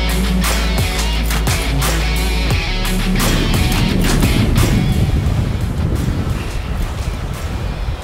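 Background rock music with a steady beat. About three seconds in, the music thins and the rushing noise of a boat running at speed over open water, with wind, takes over.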